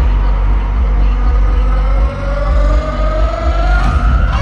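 Stadium PA sound of the show recorded from the crowd: a deep steady bass, with an electronic tone that slowly rises in pitch through the second half like a machine spinning up.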